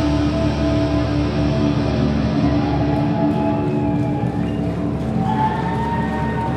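Live metal band's distorted electric guitars holding long droning notes as the song winds down, with a higher held tone coming in about five seconds in.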